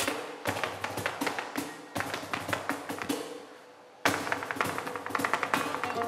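Flamenco footwork, a dancer's shoe heels and toes rapping rapid taps on the stage, over guitar accompaniment. The tapping thins out and fades, then starts again suddenly and loudly about four seconds in.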